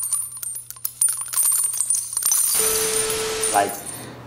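Logo sting sound effect: a rapid run of clicking and jingling over a low hum, then a held tone with hiss near the end.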